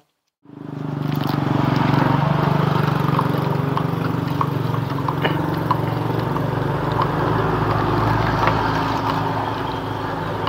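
A motor vehicle's engine running steadily with a low hum, fading in over the first second, with a few faint light ticks over it.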